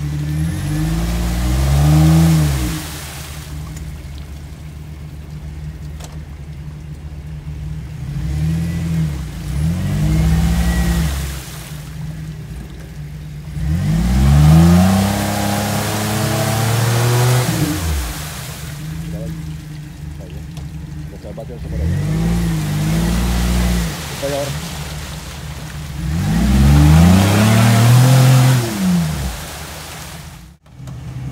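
Jeep Wrangler's engine revving hard in about five separate bursts, each rising and falling in pitch, with a hiss of spraying mud and water as the tyres spin in a deep mud pit.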